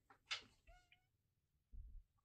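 Mostly near silence, with a faint tap, then a short, faint pitched call lasting about a third of a second, a little over half a second in, and a soft low thump near the end.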